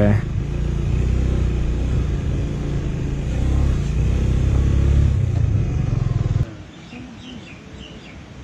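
Motorcycle engine running steadily while riding along a rough dirt lane. About six and a half seconds in it cuts off abruptly to a much quieter outdoor background with a few faint chirps.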